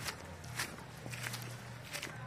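Footsteps through grass and leaf litter, soft strikes roughly every half second, over a low steady hum.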